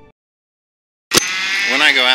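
Background music stops, followed by about a second of dead silence; a click about a second in, then a man starts talking.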